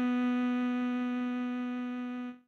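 Tenor saxophone holding one long, steady note of the melody, a whole note held across the bar.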